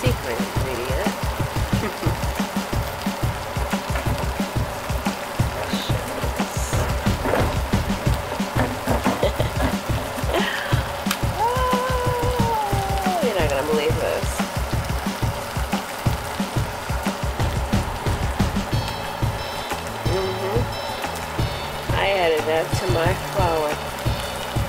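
Background music over a pan of potatoes in tomato sauce simmering on the stove, the sauce bubbling with a steady wet crackle.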